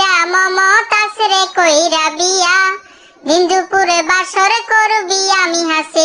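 A high-pitched voice singing a melody in Bengali, with a brief pause about three seconds in.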